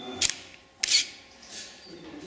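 A short high beep, then a sharp click and a louder, brief mechanical snap just under a second in: a digital camera focusing and its shutter firing.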